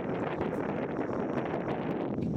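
Wind noise on the camera microphone: a steady rushing noise with no distinct events.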